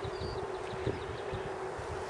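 Low steady background hum with a faint constant tone, and a single light tap about a second in.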